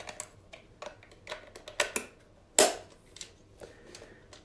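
Light plastic clicks and taps as the battery compartment cover of a handheld radio-control drone transmitter is fitted back on, with one louder click a little past halfway.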